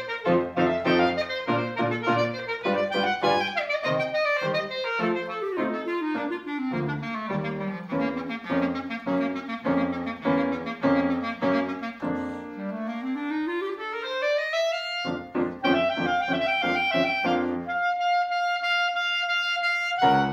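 Clarinet playing a lively melody with piano accompaniment. About two-thirds of the way through it climbs in a long rising run, and near the end it holds one high note.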